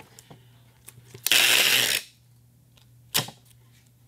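Paperless butyl joist tape (G-Tape 3035) pulled off a handheld packing-tape gun in one quick stretch along a wooden joist: a loud ripping peel lasting under a second. A single sharp click follows about a second later.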